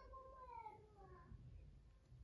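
Sheltie guinea pig vocalising softly while being stroked on the head: a faint pitched call that slides down in pitch over the first second, over a low purring rumble.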